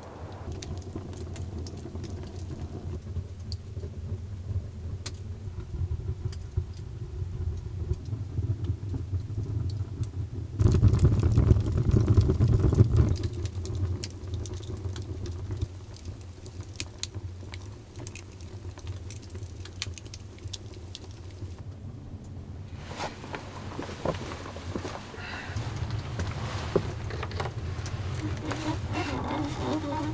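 Wood fire burning in a stone fireplace: irregular crackles and pops over a steady low rumble, with a louder noisy stretch of about two seconds near the middle.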